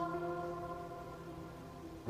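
Background music: one held chord slowly fading, with a new chord starting at the very end.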